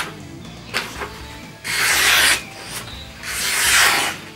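Freshly stropped Roselli Bear Claw knife with a very hard carbon-steel blade slicing through printer paper in two long strokes about a second and a half apart. Each stroke is an airy hiss lasting under a second. The edge cuts cleanly, pretty much back to its original sharpness after stropping.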